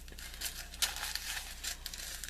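Small clear plastic zip-lock bags of diamond-painting drills crinkling as they are handled and shuffled, a run of irregular crackles that is busiest about a second in.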